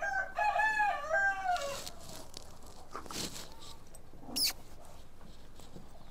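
A rooster crowing once, a multi-note call of about a second and a half that falls away at its end. A brief high chirp follows a few seconds later.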